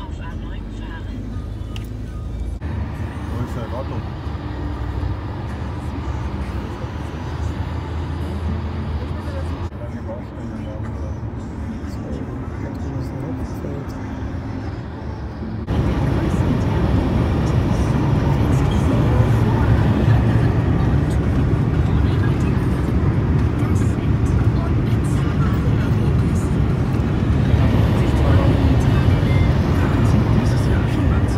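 Road and engine noise inside a moving Mercedes car's cabin, changing abruptly a few times. From about halfway on it is louder and steady, at motorway speed.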